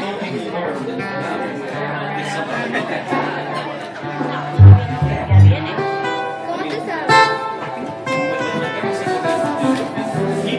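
Acoustic guitars and an electric bass guitar playing, with two loud low bass notes about halfway through.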